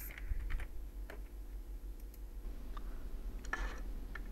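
Computer keyboard keys and mouse clicks: a handful of separate, scattered clicks as a number is typed in and a button is clicked.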